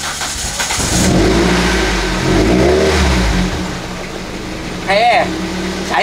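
Car engine revved once, its pitch rising and falling over about a second, then easing back to a steady idle.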